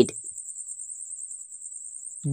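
A steady, rapidly pulsing high-pitched trill, like an insect's chirring, running unbroken.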